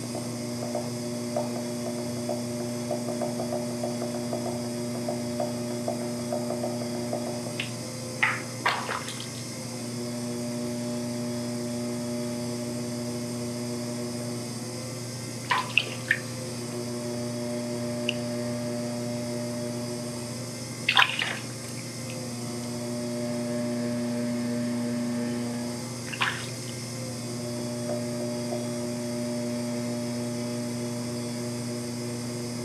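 Electric pottery wheel running with a steady motor hum while wet clay is recentered on it, hands and a sponge swishing against the spinning clay. A few short wet slaps and splashes come spread through, about eight seconds in, around sixteen and twenty-one seconds, and again near the end.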